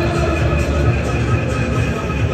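Large football crowd singing together in a stadium, loud and continuous over a low rumble of crowd noise.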